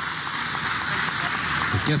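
Audience applauding: a steady patter of many hands clapping.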